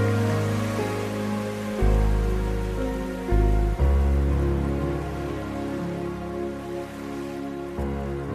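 Slow, gentle background music of long held notes over deep bass notes that change every second or so, with a steady hiss of rain laid over it.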